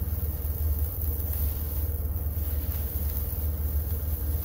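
Steady low hum of an induction cooktop running under a nonstick pan, with faint scraping as a utensil stirs oyster mushroom strips in the pan.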